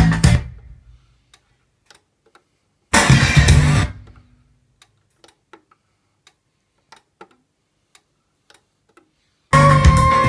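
Guitar music playing through a hi-fi system cuts out, comes back for about a second, cuts out again and returns near the end as the selector buttons on a Denon PRA-1500 preamplifier are pressed. Faint clicks from the buttons sound in the quiet gaps.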